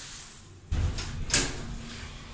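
Lift car doors sliding shut: a sudden low rumble about two-thirds of a second in, then a sharp knock about half a second later, with a low hum running on after it.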